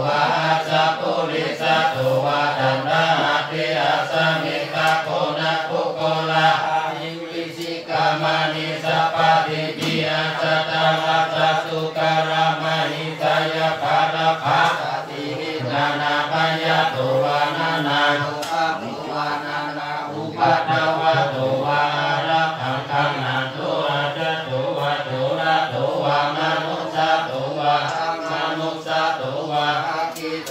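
Buddhist monks chanting Pali verses in unison on a steady, low, near-monotone pitch, in long phrases broken by brief breath pauses.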